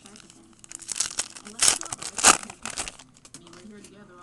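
Trading cards shuffled and flicked through by hand: a quick run of papery clicks and rustles from about a second in, with two louder snaps in the middle.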